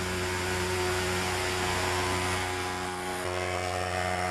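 Thermal fogging machine on a pickup truck running steadily with an even, pitched drone, blowing out white insecticide fog against adult mosquitoes. The drone's pitch shifts slightly a little after three seconds.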